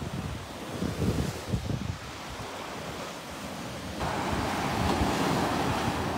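Small sea waves breaking and washing up a sandy beach, with gusts of wind buffeting the microphone. The wash of a wave swells and grows louder about four seconds in.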